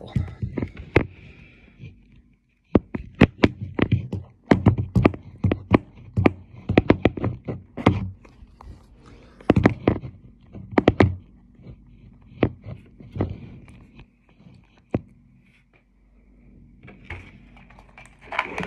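Handling noise: a run of irregular knocks and clatters as the phone and small objects, among them a matchbox and a candle jar, are moved about and set down on a table, over a faint steady hum. The knocks are densest in the first half and thin out towards the end.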